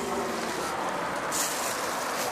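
Steady road traffic noise from passing vehicles, with a brief hiss about one and a half seconds in.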